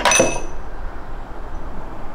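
A sharp plastic clink with a short ringing tail as the water tank is pulled out of the side of a Petrus PE3320 espresso machine, followed by a faint low hum.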